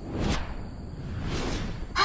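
Two whoosh sound effects of a figure flying fast through the air: a short one about a quarter second in and a longer swell about a second and a half in.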